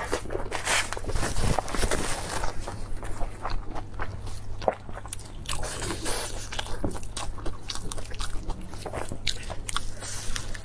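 Close-miked chewing and irregular sharp crunching of crisp lettuce leaves wrapped around braised pork belly. Later on, lettuce leaves are handled and folded by hand. A low steady hum runs underneath.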